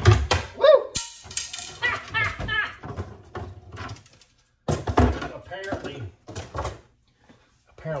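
Arrow shafts clattering and knocking against each other as a large prop arrow is pulled out of a crowded arrow rack, knocking other arrows loose, with a sharp knock about a second in.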